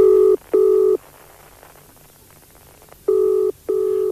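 British telephone ringing tone as heard down the line, the double 'brr-brr': two short tones in quick succession, a pause of about two seconds, then another pair.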